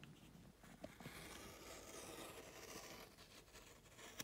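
Faint scratchy hiss of a rotary cutter blade rolling through fabric along a curved ruler, starting about a second in and lasting a couple of seconds.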